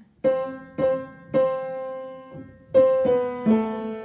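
Piano being played: a short melodic phrase of six struck notes over a lower note. Three notes come about half a second apart, the third held and left to ring for about a second, then three more follow quickly.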